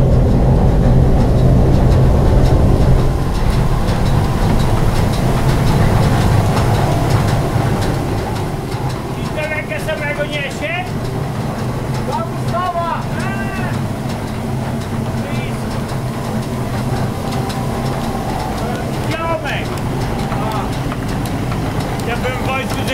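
Electrically driven grain mill's machinery running, with a steady low hum and a fast, rhythmic clatter: the 'beat' of the working mill.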